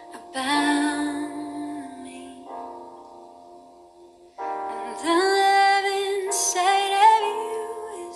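Slow worship song: a woman sings a long held note over sustained chords. Her voice drops out for a couple of seconds while the chords ring on, then she comes back in, louder, with vibrato, about four and a half seconds in.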